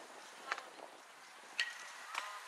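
Faint distant voices of players and spectators at an outdoor softball field, with two short sharp knocks about a second apart.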